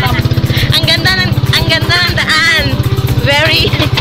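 Motorcycle engine of a sidecar tricycle running steadily under way, a rapid even pulse, heard from inside the sidecar.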